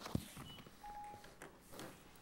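Two faint electronic beeps, a short high one about half a second in and a longer lower one about a second in, with a click at the start and a few soft clicks and rustles around them.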